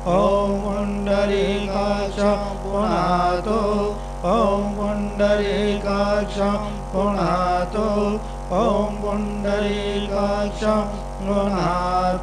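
Male voices chanting a Sanskrit mantra to a melodic line over a steady drone.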